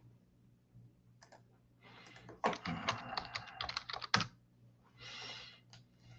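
Typing on a computer keyboard: a few keystrokes about a second in, then a quick run of keystrokes for about two seconds, followed by a short soft hiss near the end.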